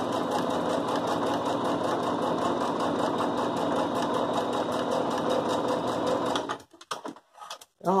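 Domestic electric sewing machine stitching a seam through layered cotton patchwork scraps, running steadily at speed and stopping about six and a half seconds in. A few short clicks follow.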